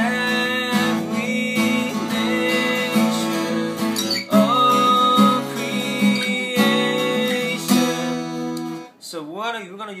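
Steel-string acoustic guitar strummed through the chords of a song's bridge, with a chord change about four seconds in; the playing stops near the end.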